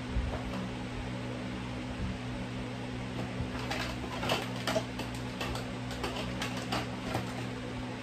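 Steady hum of a fan running, with a scatter of small clicks and rustles from about three and a half to seven seconds in as small objects are handled.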